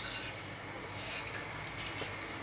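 Steady hiss of a lit gas stove burner, its flame scorching the edge of a fir board held in it.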